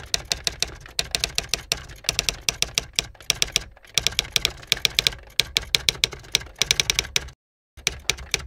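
Typewriter key strikes, a sound effect for text being typed out: rapid runs of sharp clicks broken by short pauses, with a brief silence near the end.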